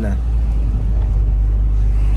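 Car interior noise while driving: a steady low rumble of engine and tyres on the road.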